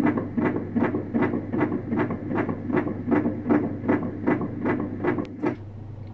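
Fetal heartbeat played through an ultrasound scanner's Doppler speaker: a fast, even pulse of about 158 beats a minute. It stops about half a second before the end.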